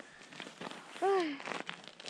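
Kick-sled runners scraping and crunching over packed snow strewn with sand and grit, which makes the sled drag. A short vocal cry, falling in pitch, comes about a second in.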